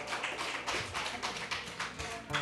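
Scattered hand clapping from a few people: many quick, irregular claps.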